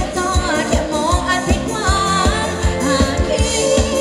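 Live band playing a Thai ramwong dance song: a singer's melody over a steady kick-drum beat of about three strikes a second.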